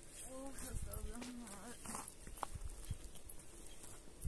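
A person's voice saying a few short phrases, mostly in the first half.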